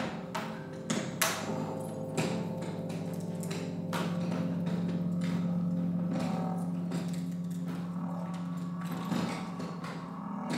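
Free-improvised ensemble music from pedal steel guitar, saw, trombone and electronics: a low tone held for several seconds under scattered sharp clicks and knocks.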